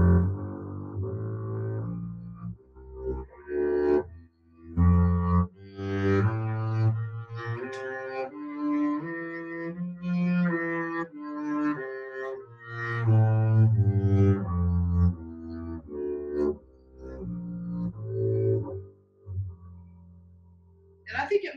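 Double bass played with the bow: a scale climbing note by note for about ten seconds and coming back down, notes slurred two to a bow with vibrato. There is a brief break about four seconds in.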